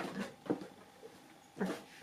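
A dog whimpering faintly in a thin, steady whine, with a few short knocks and rustles of toy boxes being put down and picked up.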